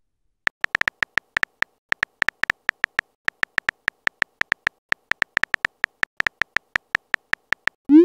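Phone-keyboard typing sound effect from a texting-story app: quick, uneven key clicks, about four to six a second, as a message is typed out letter by letter.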